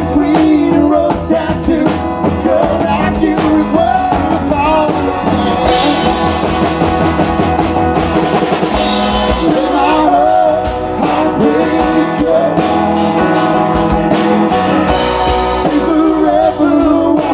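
Live country-rock band playing a song: electric and acoustic guitars over upright bass and drums.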